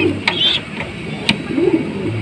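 Pigeons cooing low in a loft, two short coos at the start and again near the end, with a few light clicks and knocks.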